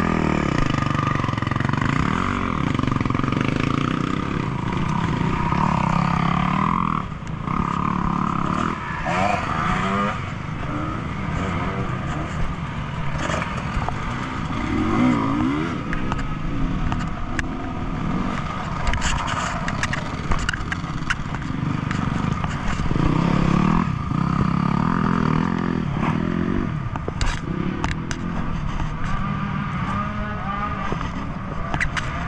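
Dirt bike engines revving up and down again and again, with scraping and clatter as sticky clay is dug by hand out of a mud-packed front wheel and fork.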